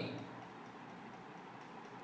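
A pause in a man's speech. Faint steady room noise, with the tail of his last word fading out at the start.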